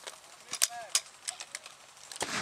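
A few sharp clicks and knocks of a spare magazine being tried in an airsoft rifle's magazine well, with a short vocal sound about half a second in.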